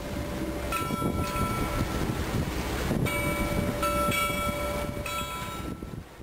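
A bell buoy's bell ringing, struck about three times with the rings hanging on and fading, over a continuous low rough rush of sea and wind.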